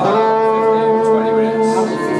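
Live rock band playing amplified instruments, opening with a held note that rings steadily for nearly two seconds and then changes near the end.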